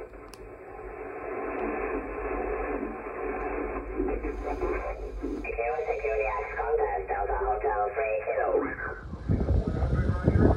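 HF amateur radio receiver audio on single sideband: voices of distant stations over band noise, narrow and thin with nothing above the voice band. A louder rumble takes over near the end.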